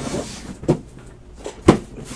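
Cardboard box being picked up and handled: soft rustling, then two short knocks, the second near the end and louder.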